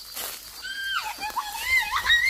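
A person calling out from a distance in one long, high-pitched, drawn-out cry that drops in pitch about halfway through. A brief rustle of dry brush comes near the start.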